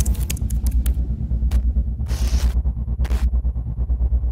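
Logo-sting sound design: a deep bass rumble pulsing rapidly, with sharp glitchy clicks and short bursts of static-like hiss, the longest about two seconds in.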